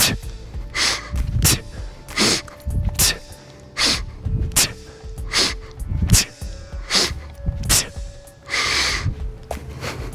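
A man breathing hard in a steady rhythm during kettlebell swings: sharp hissing exhales forced out through the teeth and quick breaths in through the nose, a breath stroke about every three-quarters of a second. This is power breathing, which keeps pressure in the abdominals to stabilise the spine.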